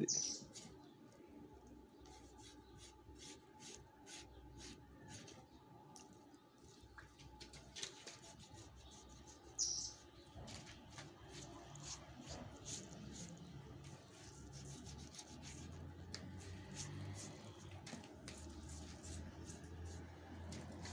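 Faint knife slicing and scraping through pig skin and belly fat, a scatter of soft rubbing ticks, with a brief high bird chirp twice, at the very start and about ten seconds in.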